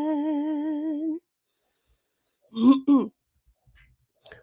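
A solo woman's voice sings a cappella, holding a long note with a steady vibrato that breaks off about a second in. After a pause, two short voiced sounds with sliding pitch come near the middle.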